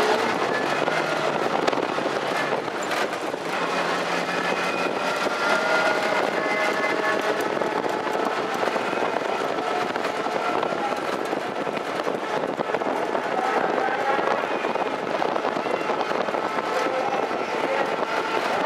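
Steady outdoor noise at a harness-racing track as trotters pulling sulkies go past, with a faint voice in the background.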